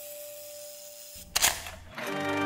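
A camera shutter sound effect: a brief low rumble, then a sharp click with a short hiss after it, a little past a second in. Before it, a held music note fades away.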